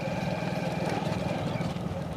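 Motorcycle engine running steadily while riding along at an even pace, a fast even pulsing with light road and wind hiss.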